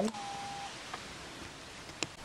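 Quiet room tone in a small room, with a faint steady tone for about half a second at the start and a soft tick about a second in.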